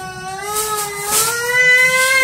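A small boy crying in one long, unbroken wail that rises slowly in pitch: a sulking tantrum cry.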